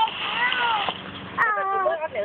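A young child's high-pitched wordless vocal calls, two of them, each bending up and down in pitch; the second starts about a second and a half in.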